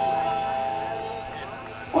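A held chord from the band's instruments ringing on and fading slowly, with a man's speaking voice cutting back in at the very end.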